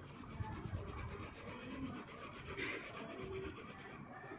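Ballpoint pen scratching back and forth on paper, going over the same line again and again to thicken it, with one louder stroke about two-thirds of the way through.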